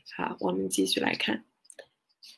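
Speech only: a woman speaking briefly, followed by a couple of faint clicks near the end.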